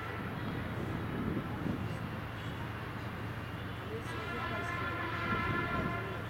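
A horn sounds as one steady held note, lasting about two seconds near the end, over a steady low background rumble.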